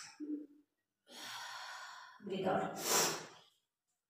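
A woman breathing hard to catch her breath after a set of exercise reps. A short low hum comes near the start, then a long breath out about a second in, and a louder voiced sigh of breath around two and a half seconds in.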